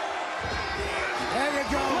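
Arena wrestling crowd noise, a steady roar of the audience under the match.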